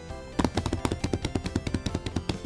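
Hands drumming fast on a vinyl-covered foam play roll: a rapid run of slaps, about eight a second, starting about half a second in, over background music.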